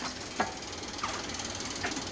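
A low, steady mechanical whir in the background, with a faint click about half a second in.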